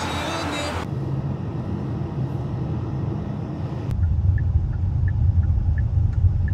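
Steady low rumble of road and engine noise heard from inside a moving car. It becomes louder and deeper at a cut about four seconds in, with faint short high chirps repeating over it.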